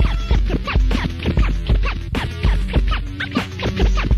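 DJ scratching a record on a turntable, quick back-and-forth cuts several times a second, over a hip hop drum beat and a keyboard line of held notes that step in pitch.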